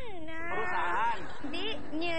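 A young woman's voice making drawn-out, high-pitched wordless vocal sounds. It glides down in pitch and holds, then comes back once more near the end.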